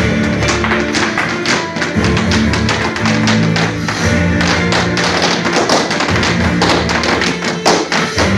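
Irish dance hard shoes striking the floor in quick, rhythmic taps over recorded dance music.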